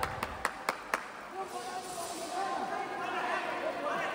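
Five quick hand claps close to the microphone in the first second, about four a second, followed by a murmur of voices in a large hall.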